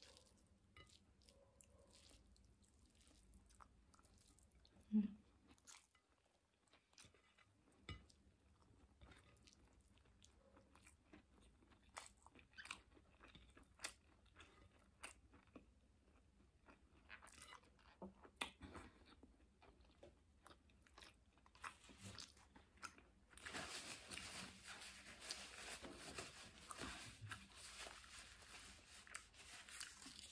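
Close-miked chewing of a mouthful of rice and stir-fried vegetables, faint, with scattered soft wet clicks and smacks of the mouth. A brief louder low sound about five seconds in, and denser, steadier chewing noise over the last six seconds or so.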